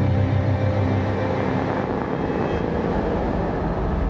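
Dark ambient score closing a horror story: low sustained drone tones that die away about two seconds in, leaving a steady low rumbling wash.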